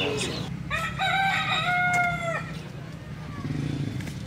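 A rooster crowing once: a single call of about a second and a half, starting just under a second in, over a steady low hum.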